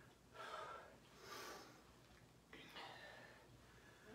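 Faint breathing of a woman exerting herself through dumbbell squat-curl-press reps, three breaths about a second apart.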